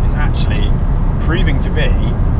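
Steady low road and engine drone inside a Mercedes CLK320's cabin cruising at about 70 mph on the motorway, with a man's voice coming in briefly over it.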